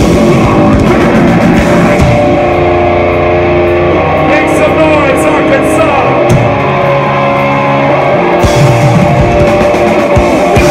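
Metalcore band playing loud and live: distorted guitars, bass and drums. The cymbals drop back for a stretch of held low guitar notes about two seconds in, and the full kit crashes back in near the end.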